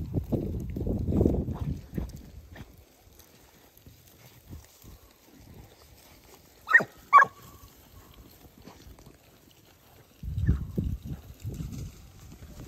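A Segugio Italiano hound barks twice, short and about half a second apart, a little past the middle; each bark falls in pitch. Low rustling of movement through the brush comes in the first two seconds and again near the end.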